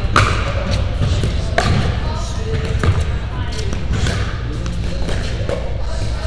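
Pickleball paddles striking the plastic ball in a doubles rally: sharp pops about every second and a half. Background voices and a steady low hum run underneath.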